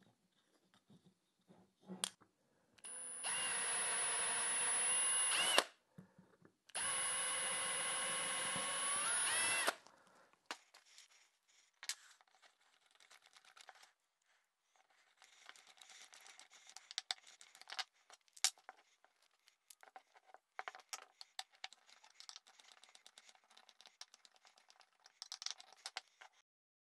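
Cordless drill running twice, about three seconds each, boring two small holes in a wooden bar; the second run's whine rises just before it stops. Then faint, irregular clicking and scraping as small screws are driven in by hand with a screwdriver.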